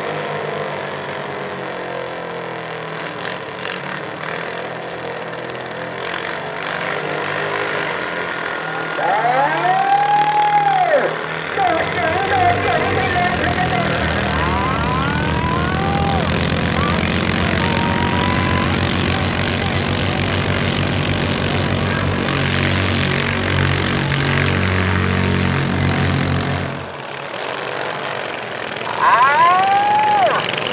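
Modified rice tractor engines running hard. A loud, steady stretch through the middle cuts off suddenly near the end, and people shout over the engines.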